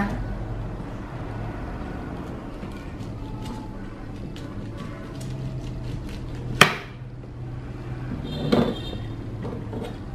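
Kitchen knife cutting through a peeled pineapple onto a plastic cutting board: faint small knocks and cutting sounds, with one sharp knock of the blade on the board about two-thirds of the way through, over a low steady hum.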